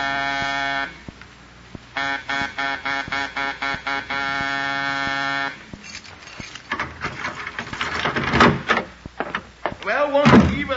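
Electric doorbell buzzer sound effect: one buzz of about a second, a pause, then a string of short buzzes ending in a longer buzz, with no one answering. In the last few seconds come faint clicks and a man muttering.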